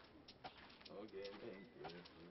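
A dove cooing faintly outdoors: three short low coos in a row, about half a second apart.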